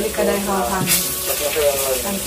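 Pork belly sizzling on a tabletop grill pan, a steady hiss with voices talking over it.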